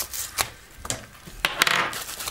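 A craft knife cutting into a plastic postal packet, which is then pulled open by hand. A few sharp clicks and crackles are followed by a short burst of plastic rustling near the end.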